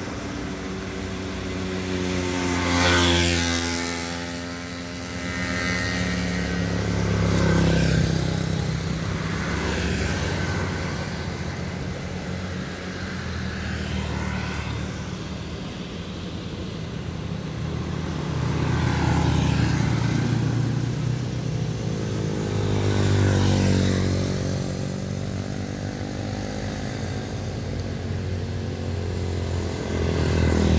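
Traffic passing on a narrow road. A truck goes by about three seconds in with a falling engine note as it passes, then several small motorcycles pass one after another, each swelling and fading.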